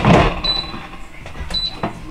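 Air fryer basket clunking home into the GoWISE USA air fryer, followed by two short high electronic beeps about a second apart as the unit resumes cooking at 400°, and a click near the end.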